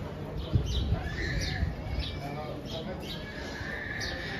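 Open-air street ambience: a murmur of passers-by talking, with small birds chirping over and over in short high notes. Low rumbling and a few knocks come between about half a second and two seconds in.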